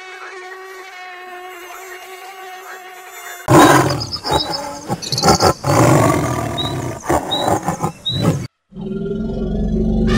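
A steady buzzing drone, then from about three and a half seconds a tiger roaring for about five seconds, with a few small high bird chirps behind it. The roaring cuts off, and after a short gap a low steady hum begins near the end.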